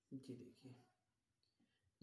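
One short spoken word, then near silence with a few faint clicks.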